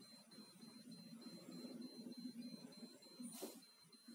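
Near silence: faint room tone with a low hum and a thin, steady high-pitched tone.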